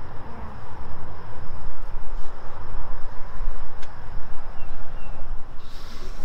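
Wind noise on the microphone, rising and falling unevenly, with a steady high-pitched insect buzz behind it and a single faint click about four seconds in.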